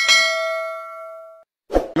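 A single bell-like ding sound effect, struck once and ringing out with several tones for about a second and a half before cutting off abruptly. A brief thump follows near the end.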